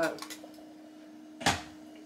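A few light clicks just after the start, then a single sharp knock about a second and a half in, the loudest sound, over a faint steady hum.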